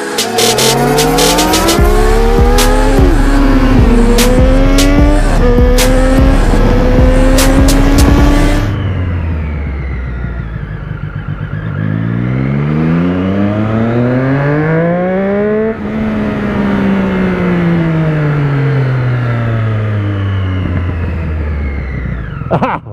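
Inline-four sport motorcycle engine accelerating hard up through the gears, its pitch climbing and dropping at each shift, with a music beat over it for the first eight seconds or so. Then it pulls once more, rising in pitch for about four seconds, and winds down slowly as the bike rolls off the throttle.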